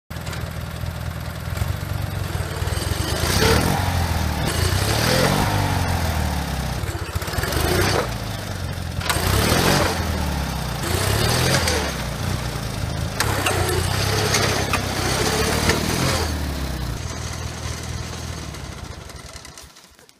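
MTD riding lawn tractor's engine revving up and down again and again under load as the tractor is driven against a tree stump. The engine sound dies away over the last few seconds.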